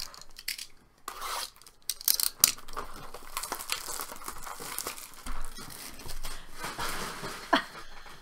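Clear plastic shrink-wrap being torn and pulled off a cardboard box of baseball cards: continuous crinkling broken by sharp crackles of tearing plastic.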